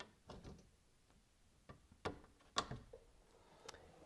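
Plastic push-pin clips being pressed into a plastic underbody splash shield: about five faint clicks and snaps, the sharpest a little past two and a half seconds in.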